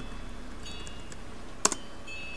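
MacBook Pro keyboard being typed on as a password is entered, a few faint keystrokes followed by one sharp, louder click about one and a half seconds in as the entry is confirmed.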